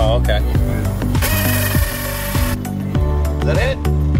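A drill with a hole saw cuts through the boat's thick fiberglass hull for about a second and a half, starting about a second in. Background music with a steady beat and vocals plays throughout.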